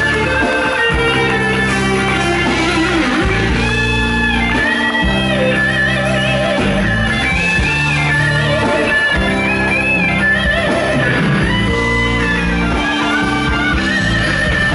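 Live blues band playing, led by an electric guitar solo: long held high notes, several bent up in pitch, over bass and drums.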